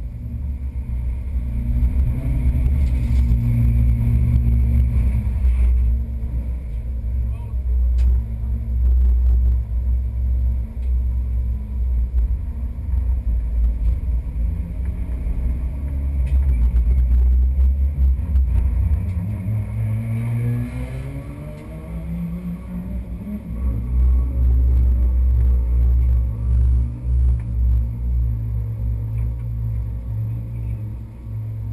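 Porsche GT3 Cup race car's flat-six engine idling with a loud, uneven low rumble, heard from inside the stripped, roll-caged cabin while the car stands still. About two-thirds of the way through the pitch rises over a couple of seconds in a rev, then it drops back to the idle rumble.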